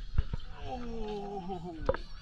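A person's drawn-out vocal exclamation, about a second long and falling slightly in pitch. It comes between a few sharp knocks, and the loudest knock falls just before the end.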